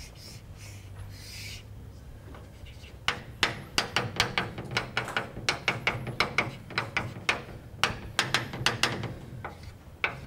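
Chalk on a blackboard while drawing small squares: a scraping stroke near the start, then from about three seconds in a quick run of sharp taps and short strokes, about four a second.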